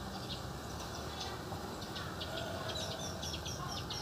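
A small bird chirping faintly in the background, a quick series of short high chirps in the second half.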